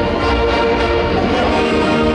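Saxophone ensemble playing held chords together, several reed tones sounding at once.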